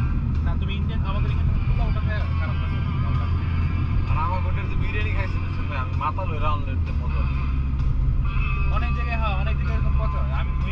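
Cabin drone of a Mitsubishi Lancer Evolution X's turbocharged four-cylinder engine and road noise while driving, a steady low hum that changes pitch about seven seconds in. Voices talk over it.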